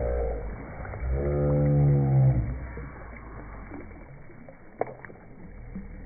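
A wordless, drawn-out low voice call, slightly falling in pitch, from about a second in for about a second and a half, after a brief higher call right at the start. A single sharp click follows near the end.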